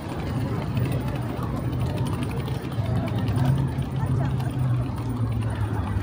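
Busy city street ambience: passers-by talking and the hum of traffic, steady throughout.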